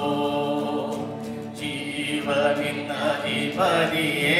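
Tamil worship song sung by a woman and a man at microphones, with guitar accompaniment, in long held, drawn-out notes. The line breaks briefly about a second and a half in and new phrases begin.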